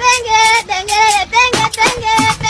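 A high-pitched voice singing a short melody of quick notes, with a few sharp clicks near the end.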